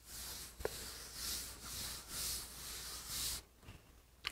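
A hand rubbing back and forth across the unbuffed finish of a refinished wooden tabletop, making a faint hiss in about four strokes, with a small click early on. The hiss comes from the slight grittiness of the unbuffed finish, which still holds dust nibs and overspray.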